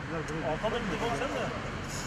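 Indistinct men's voices talking over steady background noise.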